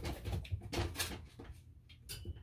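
Kittens scrambling out of and onto a plastic pet carrier: a rapid flurry of claws scrabbling and paws knocking on the hollow plastic, loudest in the first second and a half.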